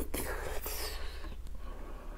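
Close-up wet mouth sounds of a person eating a soft, creamy dessert off a spoon: lip smacking and sucking as the spoon leaves the mouth, strongest in the first second, then quieter chewing.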